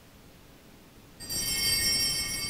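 A bell-like chime struck once about a second in. Several high ringing tones fade away over the next two seconds.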